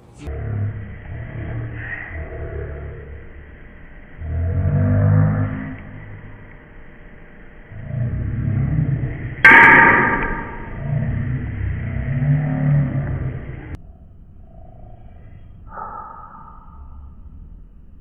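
Audio slowed down along with slow-motion video: deep, drawn-out rumbling and slurred low sounds that swell and fade several times, the loudest swell a little past halfway. It cuts off suddenly near the end, leaving quiet background and one short higher sound.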